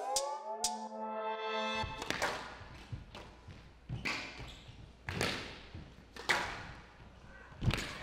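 A music stinger's held chord dies away in the first two seconds. Then comes a squash rally: the hard rubber ball is struck by rackets and hits the court walls in a series of sharp knocks about a second apart, over the low hum of an indoor arena.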